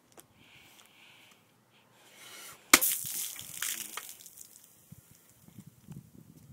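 A hammer-fist strike on a full aluminium soda can bursts it open: one sharp smack just under three seconds in, then about a second of hissing spray as the soda gushes out, dying away with small crackles.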